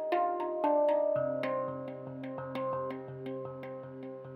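A steel handpan played with the hands: a quick run of struck notes that ring on, over a recurring low note.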